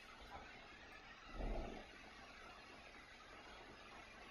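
Quiet room tone with a faint steady hiss, broken about a second and a half in by one brief, muffled low sound.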